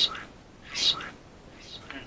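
A person whispering: short, breathy whispered syllables, about one a second, with nothing else heard.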